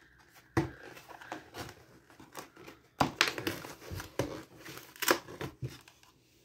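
Cardboard box flaps being handled: steady rustling and scraping of the card, broken by three sharp knocks spread through the few seconds.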